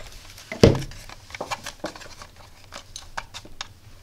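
Hands handling a hard plastic 3D-printed case and a drill battery pack: one knock about half a second in, then small scattered plastic clicks and taps as the cap of a panel-mount fuse holder is unscrewed to get at the blown fuse.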